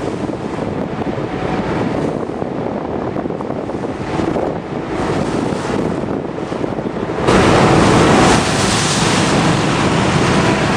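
Wind buffeting the microphone over the steady rush of water along the hull of a car ferry under way. It gets louder and brighter about seven seconds in.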